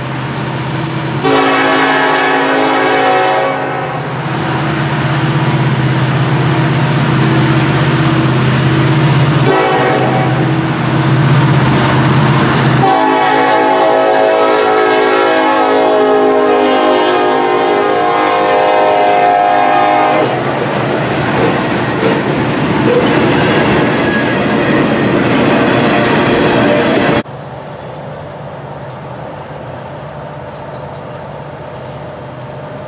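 Union Pacific freight train's diesel locomotives approaching and passing with their engines running, the lead unit sounding its air horn: a blast about a second in, a short one near ten seconds, then a long blast of about seven seconds. The rumble of the passing cars follows until the sound drops off suddenly near the end.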